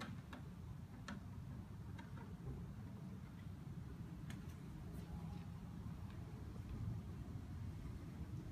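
A few faint, scattered light taps and clicks as a plastic bucket of rust-remover solution is stirred by hand, over a low steady hum.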